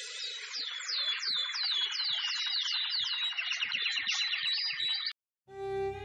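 Birdsong sound effect: a quick run of high falling chirps, about four a second, that cuts off suddenly near the end.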